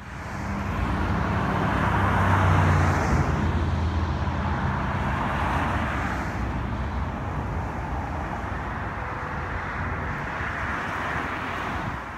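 Street traffic recorded on location: a car's engine and tyres passing by, loudest about two to three seconds in, over steady road noise from more distant traffic.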